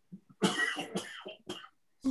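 A person coughing: a longer cough about half a second in, then a short one near the end.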